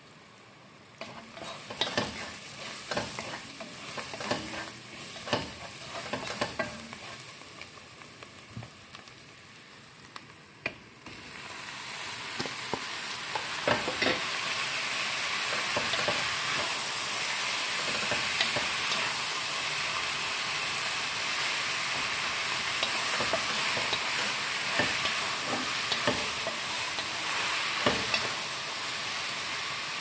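Wooden spatula knocking and scraping as onions and spices are stirred in a pot. About eleven seconds in, a much louder steady sizzle sets in as ground meat fries, with the spatula's scrapes and knocks running on through it.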